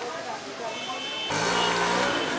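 Street sound: voices in the background, then a motor vehicle running close by, louder from a little past halfway.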